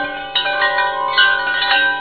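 Chimes ringing: several bell-like notes struck one after another and left to ring together, with a new note every half second or so.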